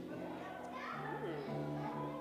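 Murmur of a congregation, with children's voices rising and falling, over soft held low instrumental notes from the worship band in a large hall.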